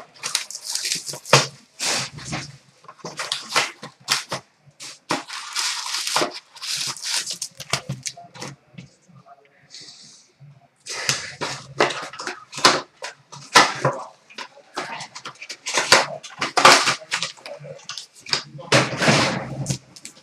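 Trading card packs being opened and cards handled on a glass counter: a run of sharp clicks and rustles, with a longer crinkle of pack wrapper about five seconds in.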